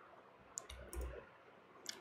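A few faint, short clicks over near-silent room tone, with a soft low thump about a second in.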